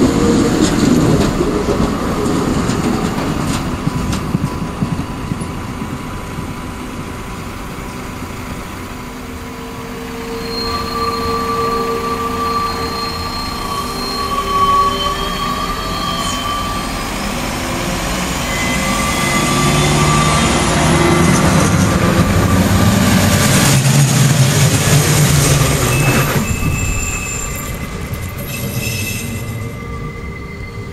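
A tram rumbling in on the rails, then long steady squeals of steel wheels on track. After that the engine of a Vogtlandbahn class 650 Regio-Shuttle diesel railcar grows louder with a whine rising in pitch, and cuts off suddenly a few seconds before the end.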